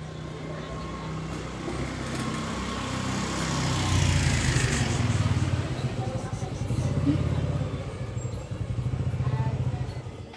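An engine running, with a low pulsing drone that grows louder about four seconds in.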